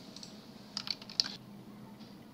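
Computer keyboard keys tapped: a short, quick run of clicks about a second in, one of them louder than the rest.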